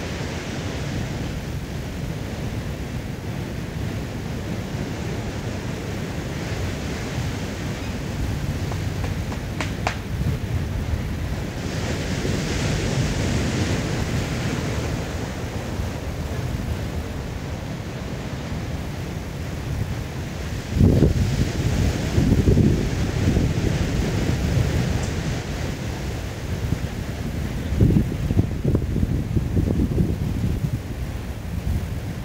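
Wind blowing across the microphone over a steady rush of surf, with stronger gusts buffeting the microphone about two-thirds of the way through and again near the end.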